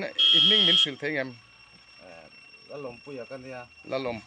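A man talking, with a short, loud, high-pitched electronic beep just after the start that lasts just over half a second.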